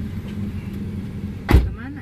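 Steady low rumble of a car's engine and road noise heard inside the cabin. A single loud thump comes about one and a half seconds in, and the sound is quieter after it.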